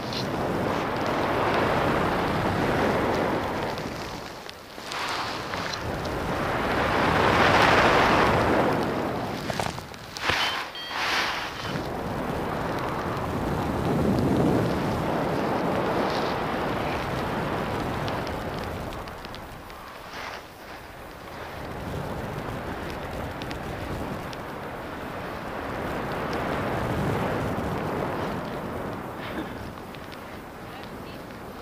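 Rushing air buffeting the microphone of a paraglider's camera in flight, a rough wind noise that swells and fades in slow waves, loudest about a third of the way in.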